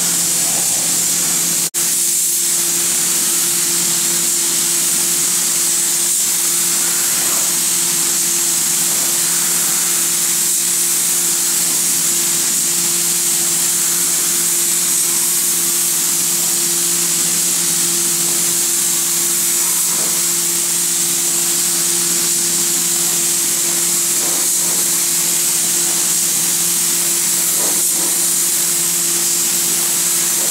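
Gravity-feed compressed-air spray gun hissing steadily as it sprays primer onto car bodywork, with a steady low hum underneath. The sound breaks off for a moment about two seconds in.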